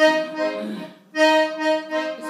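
Piano accordion sounding two held chords, each just under a second long, with a short break between them about a second in.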